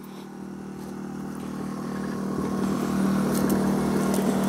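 Small portable generator running steadily, a low engine hum that grows louder over the few seconds; it is powering the travel trailer.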